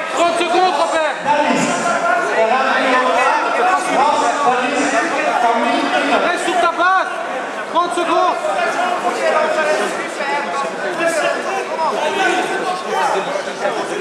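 Several voices talking and calling out at once, overlapping into a loud chatter in a large hall.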